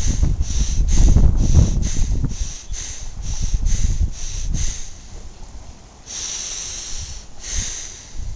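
A man breathing hard and fast in a breathing exercise: about a dozen short, sharp breaths at two to three a second, then a long slow inhalation about six seconds in, followed by the start of a long exhalation. A low rumble, like wind on the microphone, sits under the first two seconds.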